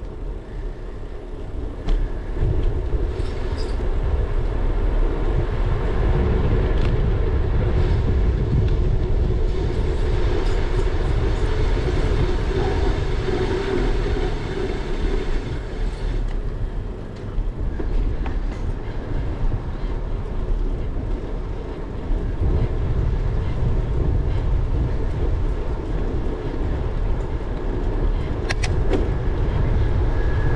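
Wind rumbling on a bicycle-mounted GoPro's microphone, together with the bike's tyres running on pavement. The rumble grows louder about two seconds in as the bike gathers speed, eases off briefly twice, and a couple of sharp clicks come near the end.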